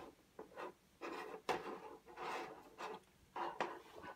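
Several soft, irregular rubbing and scraping strokes of a computer mouse being slid across a desk surface while navigating a security DVR's menu.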